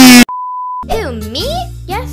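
A very loud, distorted sound sliding down in pitch cuts off abruptly. It is followed by a steady, pure censor bleep about half a second long. Then a cartoon voice with swooping pitch comes in over children's music.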